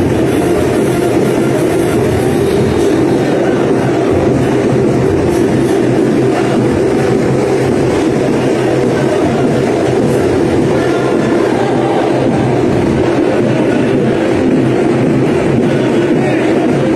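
Loud, steady din of a street rally procession, with no clear speech.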